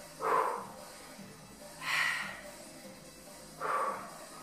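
A woman's sharp, forceful exhalations, three breaths about a second and a half apart, timed to the rhythm of dumbbell swings.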